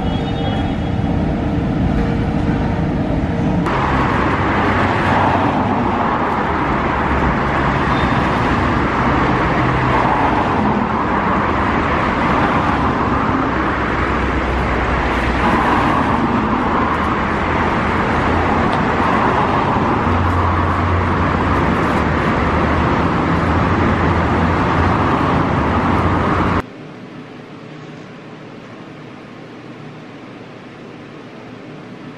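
A metro train's steady humming whine for a few seconds, then a continuous rush of city road-traffic noise. Near the end the traffic cuts off suddenly to a quieter, steady room hum.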